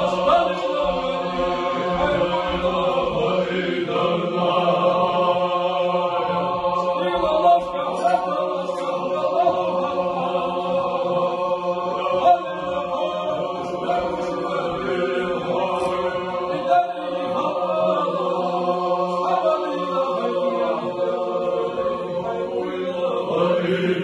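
Men's voices chanting dhikr together in a steady, sustained religious chant, holding a continuous drone-like tone without break.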